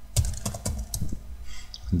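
Computer keyboard being typed on: a run of irregular key clicks.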